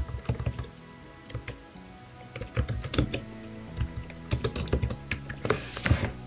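Typing on a computer keyboard in several short runs of key clicks, over soft background music.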